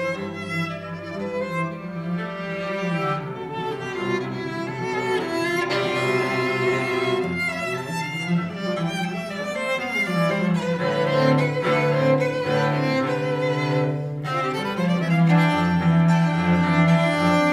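A violin and a cello playing a bowed duet: the cello holds long low notes while the violin moves more quickly above it.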